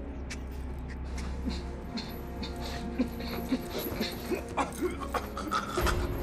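Film soundtrack: sustained tense score over a low steady rumble, with a man's choking, gagging and whimpering sounds breaking in every second or so.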